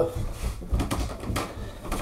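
A few light clicks and knocks with soft rustling as a wooden flute is handled and held up, in a small room.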